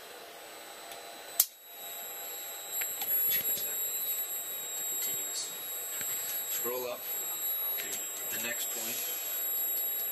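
A sharp click about a second and a half in, followed by a steady high-pitched electronic tone that continues, with faint voices now and then.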